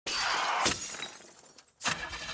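A sudden crash like shattering glass that fades away over about a second and a half, followed by a second short burst near the end.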